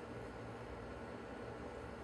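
Faint room tone: a steady low hum under an even hiss, with no distinct events.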